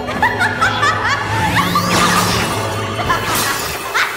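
A cartoon villain's echoing, taunting laughter over dramatic orchestral music, with glassy sound effects.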